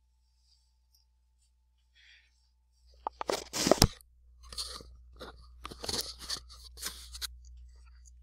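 Near silence, then about three seconds in a run of close knocks, clicks and crunchy rustling handling noise as a person sits back down at a desk microphone, loudest at the start of the run and fading into scattered knocks.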